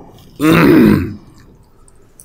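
A man clearing his throat once, loudly, about half a second in, lasting under a second.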